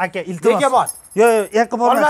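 Men talking animatedly. From about a second in there is a faint, high metallic jingling, such as keys.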